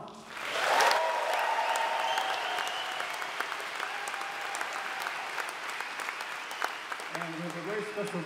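Audience applause in a concert hall, swelling up about half a second in and slowly dying away.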